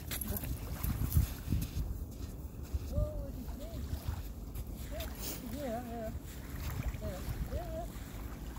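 Wind rumbling on the microphone in uneven gusts. From about three seconds in, a string of faint, short, wavering high cries comes and goes.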